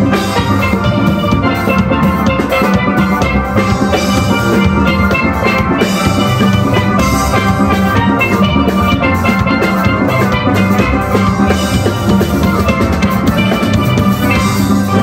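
Steel band playing live: many steelpans ringing out a tune together over a steady drum beat.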